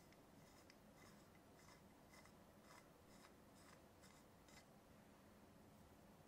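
Faint scratchy rasps, about two a second, of an sE Electronics V7 metal grille head being screwed by hand onto the threads of a V7X dynamic microphone body.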